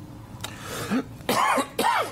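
A person in a meeting room clearing their throat, then coughing twice; the two coughs are loud and come close together in the second half.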